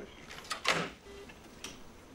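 Faint clunk and rustle about half a second in: a telephone handset being hung up on a wall-mounted phone.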